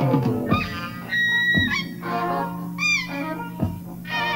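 Clarinet played freely in short, bending, wailing phrases, with a few sharp drum hits and a steady low tone underneath.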